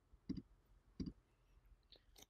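Two faint computer mouse clicks, a little under a second apart.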